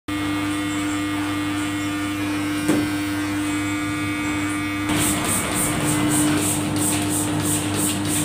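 Electric hair clipper buzzing steadily as it trims the short hair at the side of the head, with a single click a little under three seconds in. From about five seconds in, a hand-pumped spray bottle hisses in quick spritzes, about three a second.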